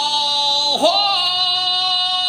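A man singing long held notes in a high voice. A little under a second in, his voice slides down and swoops back up into a new held note.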